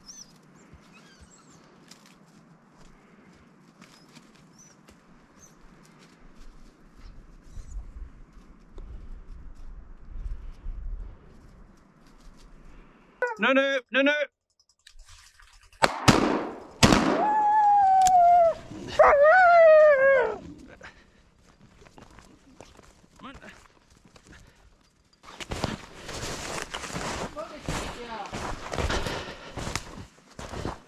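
A hunting dog gives a quick run of barks, then two gunshots about a second apart, the shots that bring down a pine marten. Loud drawn-out calls follow, and near the end there are crunching footsteps in snow.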